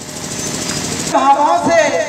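About a second of rapid, rattling noise, then a man's voice over a microphone and loudspeaker.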